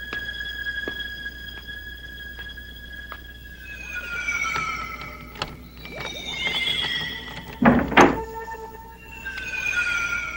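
Suspenseful synthesizer film score: high held tones that slide downward, over an even ticking pulse of slightly more than one tick a second, then two loud thuds close together about three-quarters of the way through.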